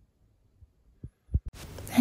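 Three soft, low thumps in quick succession a little after a second in, followed by faint steady room hiss.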